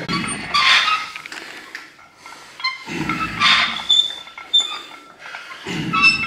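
A man's hard, forceful exhalations and straining grunts, one with each repetition of a heavy barbell curl, three times about every two and a half seconds.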